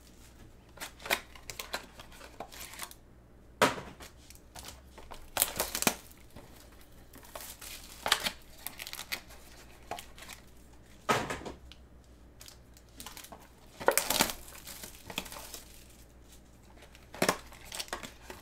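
Gloved hands opening a sealed trading-card box: plastic wrapping crinkling and tearing, and the cardboard box being handled, in short sharp bursts every few seconds.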